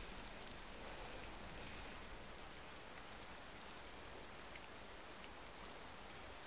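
Faint, steady ambient noise: an even hiss with a few small ticks.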